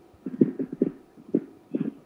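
Garbled, choppy fragments of a man's voice breaking up over a poor remote video-call connection: short muffled bursts with gaps between them, no words coming through.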